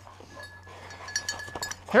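Small bell jingling lightly: a few soft clinks and one ringing note held for over a second.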